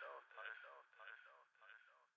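Faint echo of a vocal fragment repeating a little under twice a second and fading away: the delay tail of the song's last vocal, left ringing after the beat stops.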